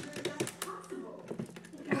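Small plastic clicks and taps as a lid is pressed and fitted onto a plastic tumbler cup.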